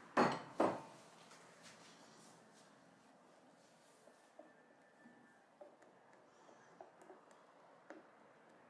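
Two sharp knocks in the first second, then faint, scattered ticks and scrapes of a silicone spatula against a glass bowl as a creamy mixture is stirred.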